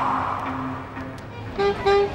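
City street traffic: cars passing around a roundabout. About a second and a half in, background music with pitched instrumental notes comes in.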